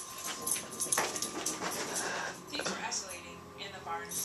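Pembroke Welsh Corgi puppy giving short whimpers and yips during play, with a few sharp knocks in between.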